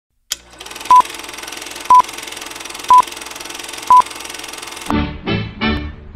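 Film countdown leader sound effect: a short high beep once a second, four times, over a steady crackling hiss. About five seconds in, music starts with a few plucked chords.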